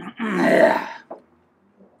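A man clearing his throat once, a rough throaty sound lasting just under a second.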